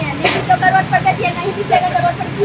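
Busy street ambience: indistinct voices and chatter over a steady low traffic hum, with one short sharp noise about a quarter second in.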